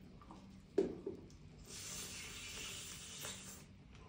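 Eating sounds from a person biting into crispy fried fish: a sharp crunch about a second in, then about two seconds of steady hiss.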